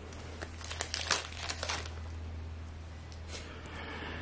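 Foil wrapper of a hockey trading-card pack crinkling and tearing as it is opened, with a cluster of sharp crackles in the first couple of seconds, then softer rustling as the cards are handled.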